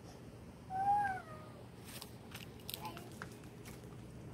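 A cat meows once, a drawn-out call that rises and then falls, about a second in. It is followed by a few light clicks and taps.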